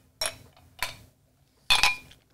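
Stainless-steel ice cubes clinking against whiskey glasses as they are tipped to drink: three short clinks, the loudest near the end with a brief ring.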